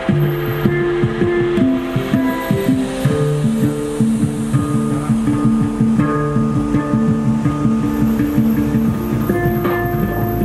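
Handpan played in a steady groove, its ringing notes over a busy electronic beat triggered from a pad controller.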